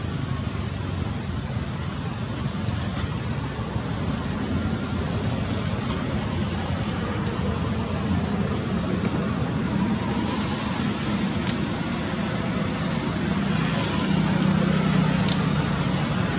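Steady low outdoor background rumble, like distant road traffic, growing slightly louder toward the end. It carries faint short high chirps and two sharp clicks, one about two-thirds of the way in and one near the end.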